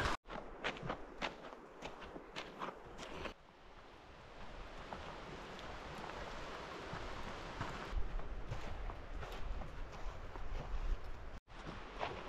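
Footsteps crunching on a dirt forest trail, quick and even at about three steps a second, stopping abruptly about three seconds in. After a brief hush comes a soft, steady outdoor hiss with a few faint light steps.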